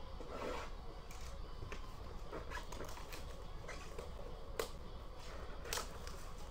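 Gloved hands opening a cardboard trading-card box and pulling out the wrapped cards: soft rustling and rubbing with scattered light clicks, two sharper ones in the second half.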